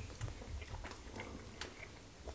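Close-up eating sounds: chewing with many small wet mouth clicks and smacks as fufu and leaf pepper soup are eaten by hand.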